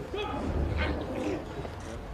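Men's voices calling out indistinctly, short rising and falling shouts, over a low steady rumble.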